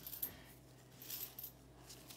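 Faint, scattered clinks of copper pennies being handled and turned over.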